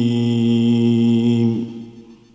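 A man's solo melodic Quran recitation (tilawah): one long held note with a slight waver, which ends and dies away about three-quarters of the way through.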